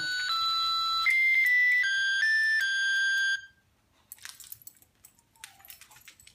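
A musical plush birthday-cake dog toy playing a tinny electronic tune of steady beeping notes, which cuts off suddenly about three and a half seconds in. Faint scattered clicks follow.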